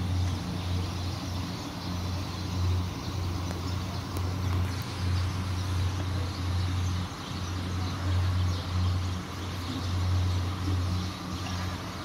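A motor running with a steady low hum that swells and fades in level every second or so.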